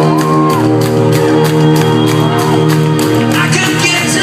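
Live rock band, with electric guitars, bass and drums, playing loudly in a large hall, heard from within the audience. Shouts and whoops come in near the end.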